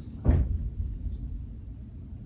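Handling noise: a soft thump about a third of a second in, then a low rumble that fades over about a second.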